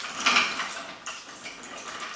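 Metal rattling and clinking from a Sears Craftsman 1500 lb motorcycle and ATV jack as its steel handle is swung upright and the jack is shifted into place. The sound is loudest in the first half second, then fades to a few light clicks.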